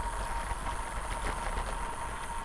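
Steady low rumble of a road bike riding over a bumpy, broken road with gravel sections: tyre and road noise mixed with wind on the microphone.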